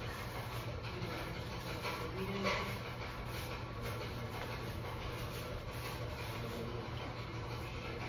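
Faint rustling and rubbing of red pre-wrap being wound around a foot and ankle by hand, over a steady low hum, with a brief louder sound about two and a half seconds in.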